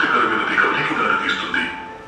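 Speech: a voice talking, trailing off near the end.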